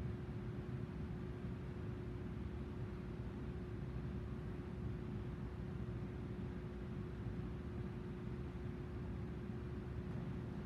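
Steady low room hum with one faint constant tone running underneath; no distinct sounds stand out.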